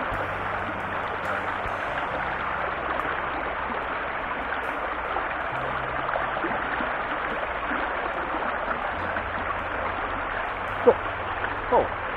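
Shallow mountain-river rapids running over rocks: a steady, even rush of water.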